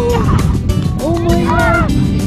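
Background music with a steady beat, over which a person's voice calls out twice: a short call at the start, then a long drawn-out call that rises and falls, from about a second in until just before the end.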